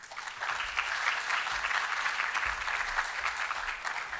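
Audience applauding. The clapping swells up within the first half second and then holds steady.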